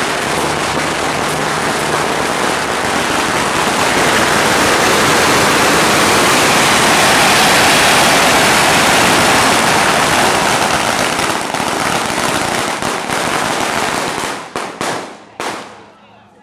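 A long string of firecrackers going off in a dense, continuous crackle, loudest in the middle. Near the end it thins to a few last separate bangs and stops.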